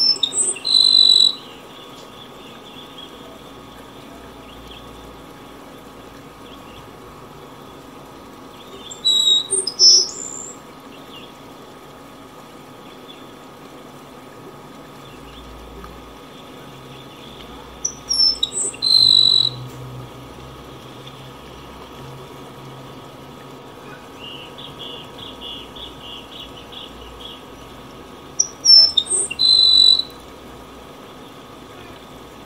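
Yellow-browed sparrow singing: four short phrases of thin, high notes, repeated about every nine to ten seconds. A run of softer, quick notes comes about two thirds of the way through, over a steady low background hiss.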